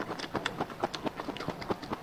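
Close-miked chewing: a dense, uneven run of small sharp mouth clicks and squelches as food is chewed with the mouth closed.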